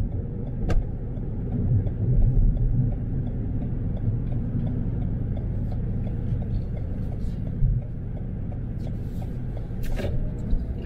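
Steady low rumble of a car driving at town speed, heard from inside the cabin, with a brief click just under a second in and another near the end.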